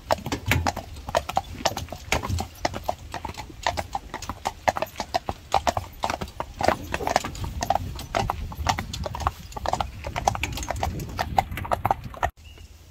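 Hooves of a pair of carriage horses, one a Friesian stallion, clip-clopping steadily on a paved lane, heard from the carriage behind them, with a low rumble underneath.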